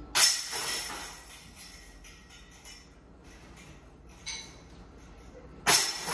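Two disc golf putts hitting the hanging chains of a disc golf basket, about five and a half seconds apart. Each is a sudden metallic jangle of chains that rings on briefly and dies away. The second putt only just goes in.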